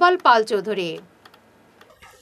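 A newsreader's voice finishing a sentence in the first half, then a near-quiet pause holding a few faint clicks.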